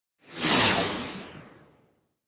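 A single whoosh sound effect for an animated logo reveal: it swells quickly, peaks about half a second in with a high hiss sweeping down in pitch, then fades out over about a second.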